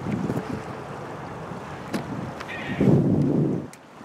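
Wind buffeting the microphone in gusts over a steady rush of wind and river water. One gust comes right at the start and a louder one about three seconds in.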